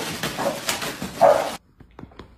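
Puppies barking, with scuffling and rustling paper as they pull mail through a door's mail slot. Two sharp barks come about half a second and a second and a quarter in. The sound cuts off suddenly near the end.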